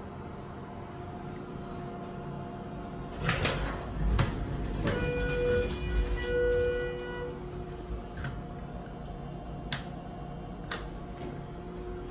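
Schindler 330A hydraulic passenger elevator: a steady hum runs under a few sharp clicks, then two chime notes sound about a second apart around the middle as the car arrives at the floor. The car doors are opening near the end.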